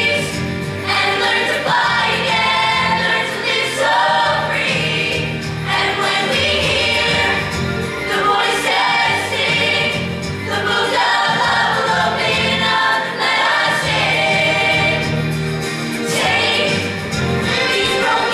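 High school show choir of mixed voices singing in harmony.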